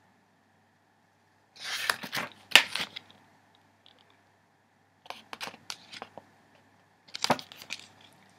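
Pages of a small paper storybook being turned and handled, paper rustling in three short spells about two, five and seven seconds in.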